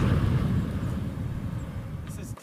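A car driving away just after passing close by, its engine and tyre noise fading steadily under a low rumble.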